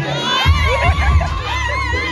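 Crowd cheering and shouting excitedly, many high voices whooping at once, over dance music with a heavy bass beat that comes back in about half a second in.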